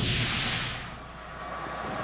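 Broadcast transition sound effect: a swoosh that fades away over about a second, then low steady background noise that rises again near the end.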